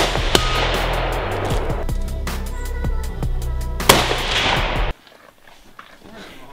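Two rifle shots from a scoped bolt-action rifle, one right at the start and one about four seconds in. Background music with a steady beat plays under them and stops abruptly about five seconds in.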